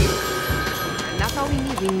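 A telephone ringing with a steady tone for about the first second, then voices talking over it, with music underneath.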